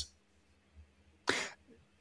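A single brief cough from a man in an otherwise near-silent pause, a short noisy burst a little over a second in.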